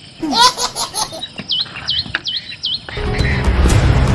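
A short laugh, then four quick, evenly spaced chirps. About three seconds in, background music with heavy bass starts.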